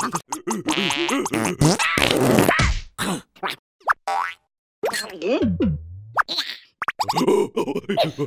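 Cartoon character voices in wordless gibberish and exclamations, mixed with comic sound effects as a rubber balloon swells. There is a quick rising squeak about four seconds in and a falling, buzzing glide just after.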